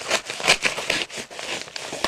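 Product packaging crinkling and rustling as it is handled and torn open: a run of short scratchy noises, loudest about half a second in.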